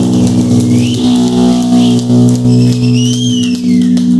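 Electric guitar and bass ringing through their amplifiers, holding a loud sustained low chord with no drums. In the second half a high whine glides up and then falls away.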